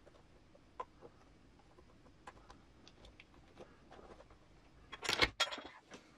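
Small clicks and rubbing as a rubber RC crawler tyre is worked onto a plastic beadlock wheel by hand, then a louder, brief clatter of handling noise about five seconds in.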